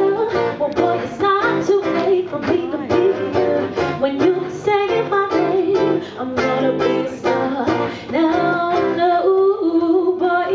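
A nylon-string acoustic guitar strummed in a steady rhythm, accompanying a woman singing live into a microphone.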